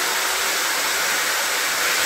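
Corded electric drill running at a steady speed, boring a hole through a board.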